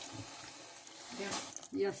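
Water poured from a glass into a pot of tomato sauce, a steady splashing pour that tapers off about a second in.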